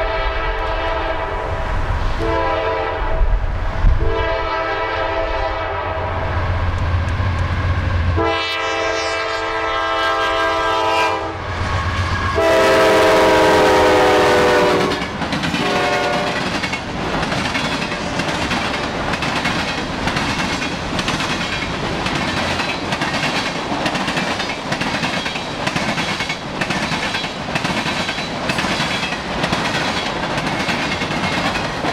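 A diesel freight locomotive's multi-chime horn sounds a series of long blasts over the engine rumble as the train approaches, loudest in a blast from about 12 to 15 seconds in, then a short toot as it passes. The freight cars then roll by with a steady clickety-clack of wheels over rail joints.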